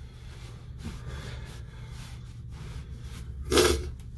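A man sneezes once, a short sharp burst near the end, which he puts down to his sinuses. Before it there is only faint room noise.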